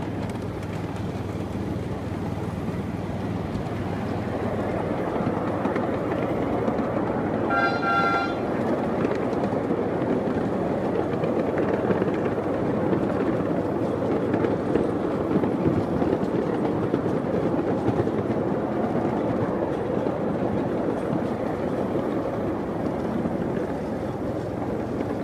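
Ride-on miniature railway train running along its track, a steady running noise throughout, with one short horn toot about eight seconds in.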